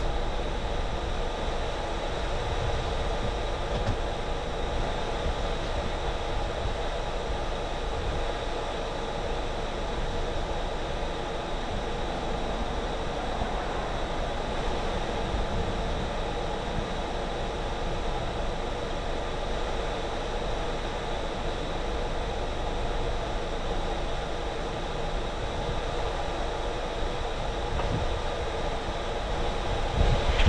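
Steady mechanical hum with a few faint steady tones running through it, unchanging throughout.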